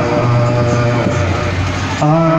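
Amplified band music through a loudspeaker system in a short gap between sung lines: a low note is held under a noisy wash, and the melody comes back in right at the end.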